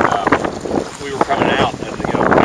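Wind buffeting the microphone over choppy water around an aluminum rowboat being rowed, with people talking over it.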